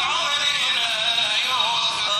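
A solo voice singing an Arabic devotional chant, holding long ornamented notes that waver in pitch.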